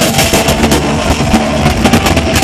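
Loud live heavy metal music from a rock band in concert, with electric guitars and a pounding drum kit.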